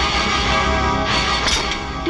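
Background film score music with sustained tones, swelling about a second in.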